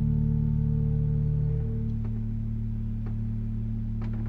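Church organ holding a low final chord that is deliberately dissonant; about one and a half seconds in, some of its notes are released while the lower notes sustain. Two faint clicks come through partway.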